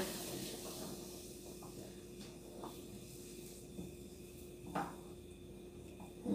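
Faint steady hiss of a gas burner heating a saucepan of coconut milk that is close to the boil, with soft rubbing of a silicone spatula stirring it.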